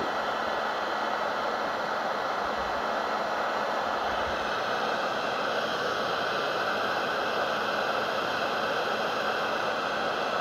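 Electric heat gun running, its fan blowing a steady hiss with a faint motor hum, as it heats the ends of a urethane belt until they turn glossy and start to melt for joining.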